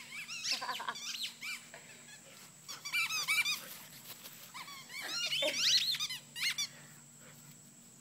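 Rubber squeaky dog toy squeaked over and over as a dog chomps on it, in three quick bursts of high-pitched squeaks: near the start, around three seconds in, and a longer run from about five to six and a half seconds.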